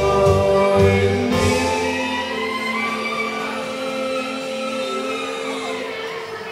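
Live string band of fiddle, acoustic guitar and upright bass ending a song: a last burst of playing with heavy bass notes, then about a second and a half in a final chord is held and rings out, slowly fading.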